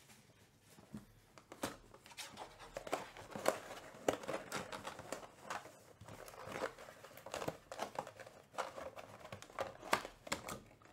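Plastic shrink wrap crinkling and a cardboard trading-card box being handled and opened, in irregular crackles and taps.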